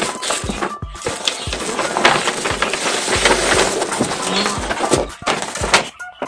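A large paper shopping bag rustling and crinkling as a boxed casserole is pulled out of it and the bag is pushed aside, with dense crackling and many small clicks.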